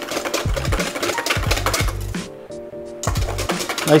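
A whisk ticks rapidly against a stainless steel bowl as a thin egg-yolk and goat's-milk custard is beaten. The whisking stops for under a second just past the middle, then resumes. Background music with steady bass plays throughout.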